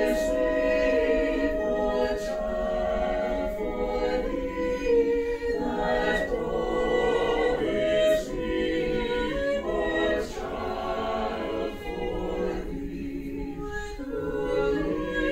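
Mixed-voice choir singing a cappella, men and women together in held chords that move every second or so.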